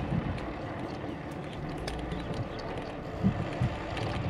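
Bicycle riding along a path: a steady rumble of tyres with wind on the microphone, and a couple of short thumps a little after three seconds in.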